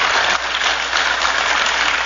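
A large audience applauding, a steady dense clatter of clapping after an applause line in a speech.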